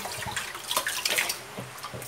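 Tap water running into a pressure cooker pot of chopped beef, splashing as a hand swishes the meat around to rinse it.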